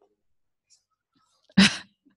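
A person's single short, sharp burst of breath, loud and sudden, about one and a half seconds in.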